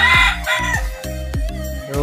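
A rooster crowing once, a held call in the first second that drops off at its end, over background music with a steady beat.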